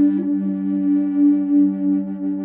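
Aromatic cedar contrabass Native American-style drone flute played through effects: a low drone note held steadily under a second, higher held note from the melody chamber, the two sounding together.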